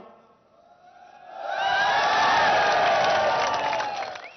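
Large rally crowd shouting and cheering, swelling up about a second in, loud for about two seconds, then dying away near the end.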